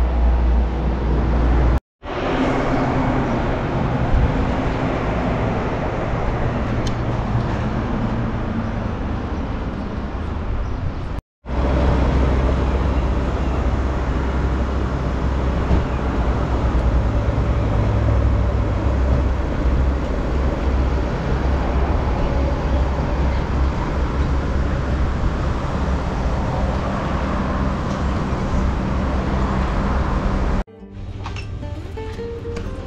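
Steady road-traffic and car-engine noise with a strong low rumble. The sound drops out completely for a moment twice, about two seconds in and about eleven seconds in.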